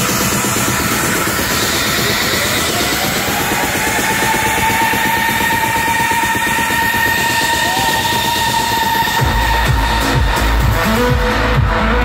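Loud techno DJ set on a club sound system, heard from within the crowd. A held synth tone rises and sustains without the low end; about nine seconds in, the heavy bass and kick drum come back in.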